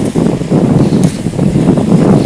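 Wind buffeting the microphone in a loud, gusty low rumble. About a second in there is a brief crackle as hands work at cling film stretched over sand.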